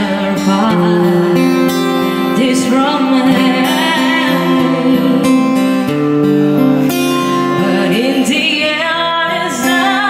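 A woman singing live into a handheld microphone, accompanied by an acoustic guitar, holding long notes that waver in pitch.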